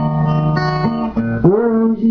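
Acoustic guitar playing a slow romantic song, with sustained melody notes over it; a new held note slides up into place about a second and a half in.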